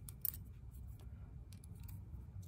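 Faint metal clicks and light scraping of a hex key turning a quarter-20 set screw into a tapped hole in a spark plug body. A couple of sharper clicks come about a quarter second in.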